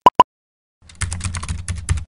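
Keyboard-typing sound effect: a quick run of clicks over a low hum, about eight clicks in a second, starting about a second in. At the very start, two short high beeps.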